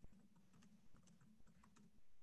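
Faint typing on a computer keyboard: soft, irregular key clicks, several a second, over a low steady hum.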